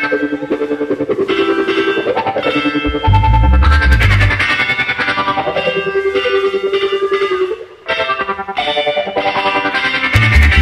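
Live band music with an electric guitar to the fore. Heavy low bass notes come in about three seconds in, and the sound drops out briefly near eight seconds.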